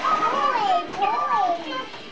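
A young child's high-pitched voice in a sliding sing-song, rising and falling over several phrases without clear words.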